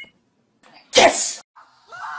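One short, loud vocal burst from a person about a second in, sudden and lasting about half a second, with near silence around it.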